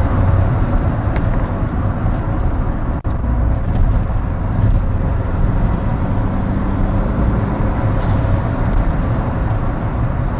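A car driving along a country road: steady engine and tyre road noise, dominated by low rumble. The sound drops out for an instant about three seconds in.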